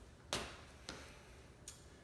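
Footsteps on a tile floor: three sharp clicks of shoe heels, the first the loudest.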